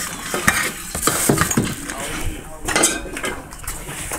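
Small metal clinks, knocks and rustles as metal engine parts are handled, an irregular run of short clicks with no steady sound under them.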